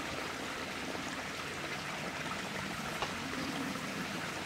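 Steady running water trickling, like a stream or inflow feeding a koi pond.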